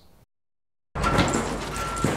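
Demolition machinery: after a short silence, heavy equipment starts up about a second in with a dense rumble, and a reversing alarm beeps on and off.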